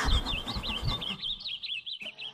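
A bird chirping in a quick, steady run of short high-pitched chirps. A low rumble lies under the first second.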